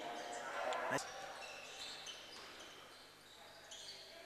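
Basketball bouncing on a hardwood court as a player dribbles, with one sharp bounce about a second in.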